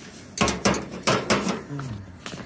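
Metal hand tools clinking and knocking together, five or so sharp metallic clicks in quick succession, as the push rod depth gauge and feeler gauge are handled and put down.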